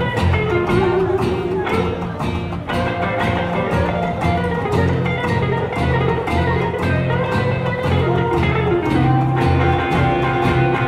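A live band playing an instrumental passage of a blues shuffle with a steady beat: upright bass, acoustic guitar and electric guitar, with no singing.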